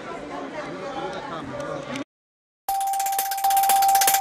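Voices talking in a large hall for about two seconds, cut off abruptly by half a second of silence, then an electronic news outro sting begins: a held high tone over rapid, even ticking.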